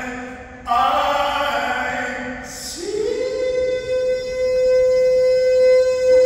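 A male singer performing live: a sung phrase, a brief break about half a second in, then a phrase that slides up into one long held high note from about three seconds in.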